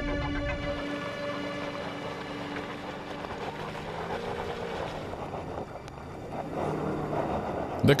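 Porsche Cayenne's V8 engine working under load as it crawls up a steep, loose slope in low range, its revs rising and falling. A music chord dies away in the first second.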